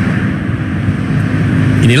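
Road traffic noise: a steady hum of passing vehicles on a city street.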